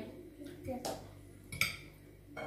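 Metal cutlery clinking against dishes at a meal, with one sharp, ringing clink about one and a half seconds in, and faint brief voice sounds before it.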